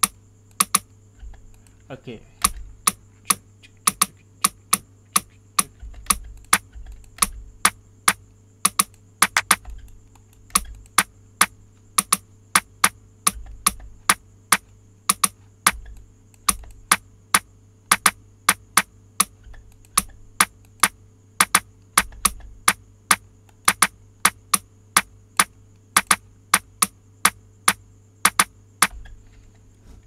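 Computer mouse clicking repeatedly, about two to three sharp clicks a second, while drum steps are entered one by one in a software step sequencer.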